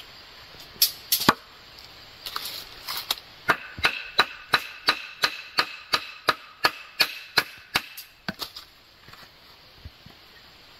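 Machete blade chopping along a split bamboo strip held in the hand, shaping it. Two loud strikes about a second in, then a steady run of sharp chops about three a second with a faint ringing, tapering to a few lighter ones near the end.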